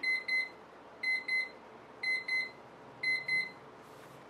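Electronic timer alarm beeping in pairs, beep-beep about once a second, four times: the signal that the timed 20-minute reading session is over.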